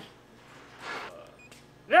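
Quiet handling of a headlight's battery cable as it is plugged into the battery pack: a small click at the start, then a soft rustle about a second in.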